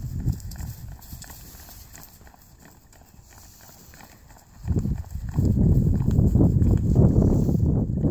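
A horse's hooves trotting on grass, heard as dull, irregular hoofbeats. A loud low rumble drops away about a second in and comes back about five seconds in.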